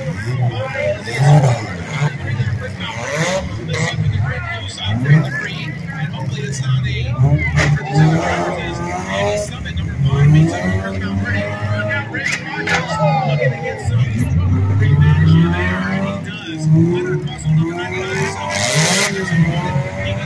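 Demolition derby car engines running and revving in the arena, under a constant layer of crowd voices. There are a couple of sharp knocks about a third and two-thirds of the way through, and a short loud rush of noise near the end.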